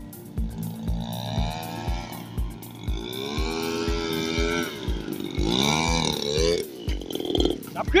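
Background music: a song with a singing voice over a steady beat of about two beats a second.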